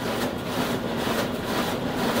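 Large production printing machine running steadily: an even mechanical noise with a faint regular pulse.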